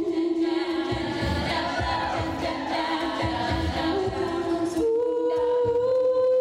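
All-female a cappella group singing: a lead voice over sustained backing harmonies, with a low rhythmic beat underneath. The voices thicken in the middle, and near the end a single high held note comes to the fore again.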